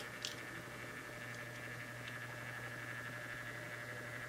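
Quiet room tone with a steady electrical hum and faint hiss, and one small click of a die-cast toy car being handled about a quarter second in.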